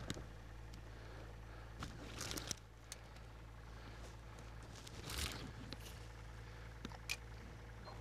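Quiet open-air ambience with a faint steady low hum and a few brief soft scrapes and clicks: about two seconds in, about five seconds in and once near the end.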